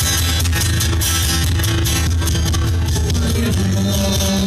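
Live acoustic band playing an instrumental passage: strummed acoustic guitars over a steady cajón beat, with little or no singing.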